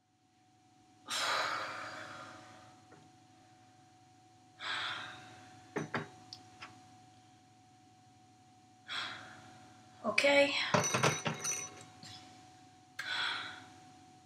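A woman sighing heavily four times, spaced a few seconds apart. Between the sighs come a few light clinks of glassware, and about ten seconds in a louder clatter of glasses and dishes being handled at the sink.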